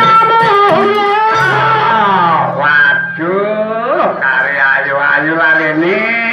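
Banyuwangi gandrung dance music, a melody sliding up and down in pitch in long glides over the ensemble's accompaniment.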